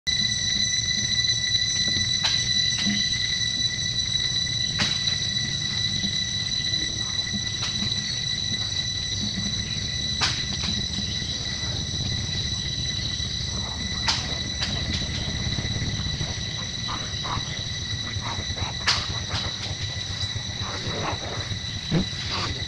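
Steady, high-pitched insect chorus: one unbroken whine with its overtones over a low rumble, with scattered short clicks and taps.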